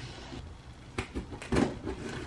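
A few knocks and scrapes of cardboard shipping boxes being handled, the sharpest about a second in and again just after.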